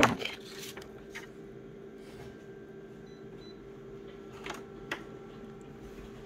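Office photocopier humming steadily at a low pitch, with one sharp click at the start and a few faint clicks and taps later on.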